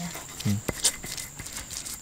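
A few short knocks of a knife cutting beef tripe against a wooden cutting board, with a brief hummed "hmm" about half a second in.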